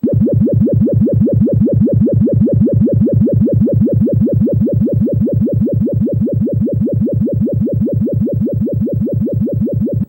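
A computer-generated sonification of the incompressibility function Q² for fifty uniformly spaced eigenangles: a phase-modulated synthetic tone that pulses evenly about five times a second, each pulse a quick sweep in pitch. It is a rather strange sound, played from a laptop through the hall's loudspeakers.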